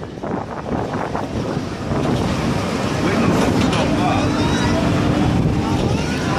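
Wind buffeting a phone microphone over a steady low rumble, with voices of people nearby.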